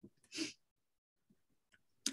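A woman's short, quick intake of breath, picked up close on the microphone, about half a second in.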